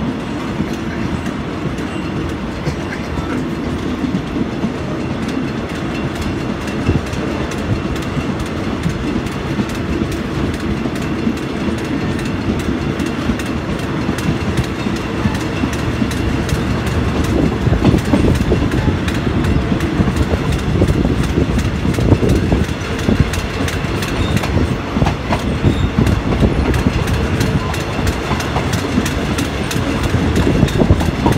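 Passenger train running along the track, heard from inside the moving carriage: a steady rumble with the wheels clicking and clattering over the rails, growing louder and more rattly a little past halfway.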